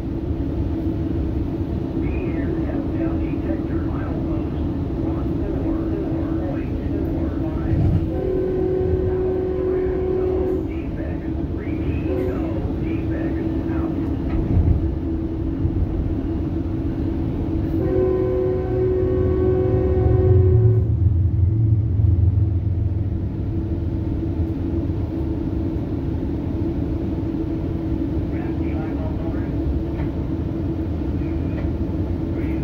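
Steady rumble and hum of a Metrolink passenger train running, heard from inside the coach. A train horn sounds twice, about two seconds long a quarter of the way in and about three seconds long past the middle, with the low rumble swelling right after the second.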